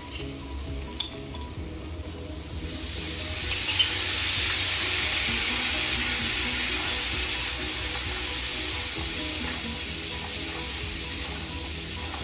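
Cashews frying in a hot pan with a spatula stirring them, then about three seconds in a loud sizzle rises as salted water hits the pan, hissing steadily and slowly easing off.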